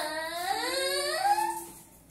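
A young boy's long crying wail, its pitch dipping and then climbing before it fades out about a second and a half in.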